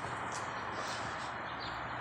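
Outdoor ambience: a steady low hum and hiss with faint bird chirps, short falling calls, one early and several in quick succession near the end.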